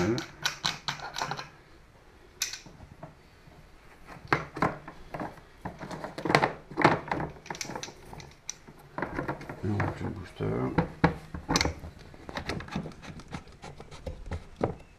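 Scattered clicks and knocks of metal hose fittings, a braided high-pressure hose and a pressure regulator with gauge being handled and packed into a hard plastic carry case.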